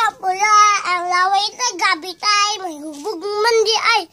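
A young boy singing, holding long, wavering high notes with short breaks between phrases.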